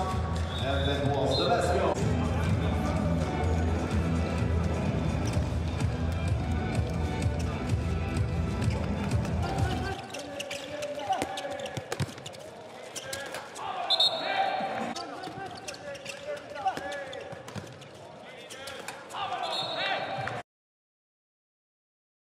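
Backing music with a heavy low beat for about the first ten seconds. Then the live sound of handball play in a near-empty hall: a ball bouncing on the court and short shouts. The sound cuts off abruptly near the end.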